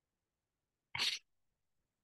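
A single brief burst from a person, about a second in and lasting about a quarter of a second, with silence around it.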